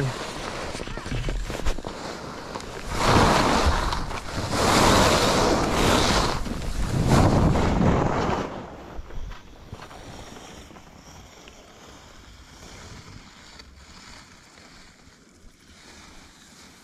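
Skis swishing through deep powder snow, in three loud rushing surges over the first eight seconds, then quieter, with wind on the microphone.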